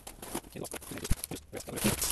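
Packing tape being peeled and torn off a small cardboard box and its flaps pulled open: a string of crackling rips and scrapes, with one sharp snap about a second in.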